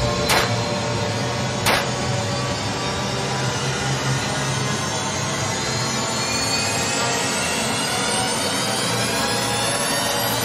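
Cinematic riser in a video soundtrack: a dense, steady swell whose pitch climbs slowly across the whole stretch, with two sharp hits in the first two seconds.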